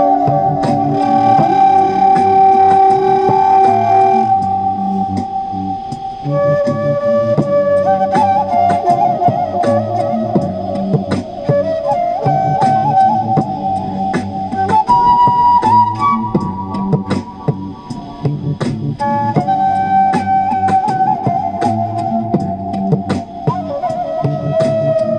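Wooden side-blown flute played through a microphone, holding long sustained melody notes that step to a new pitch every few seconds. Behind it runs a layered backing of low held tones and a steady percussive beat.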